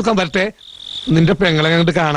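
A cricket chirring on one steady high note, after a man's brief words. The cricket is then covered by a man's long drawn-out cry held on one pitch.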